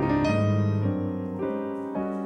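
Roland FP-4F digital piano played live in a jazz improvisation: a low bass note held through the first second while chords are struck in turn, each one ringing and fading before the next.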